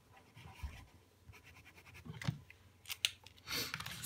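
Faint scratching of a paint-filled marker pen's nib on sketchbook paper as a word and a few swatch strokes are written, with a couple of small clicks about two and three seconds in.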